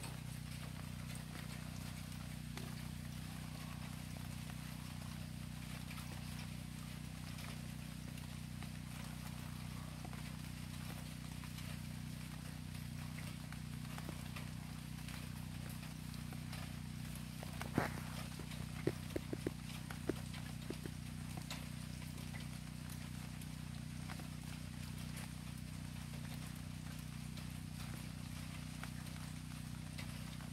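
Steady rain falling on a wooden deck and garden plants, a continuous even patter. About eighteen seconds in, a short run of half a dozen sharp knocks stands out above it.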